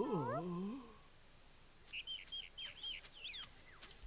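A short, drawn-out voiced sound with a sliding pitch that trails off within the first second. Then, from about two seconds in, a quick run of about eight short, high chirps like a small bird's.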